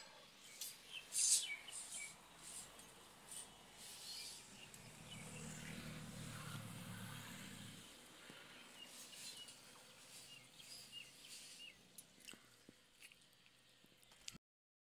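Faint outdoor ambience with scattered small bird chirps. There are a couple of sharp clicks about a second in, and a low hum swells for a few seconds midway.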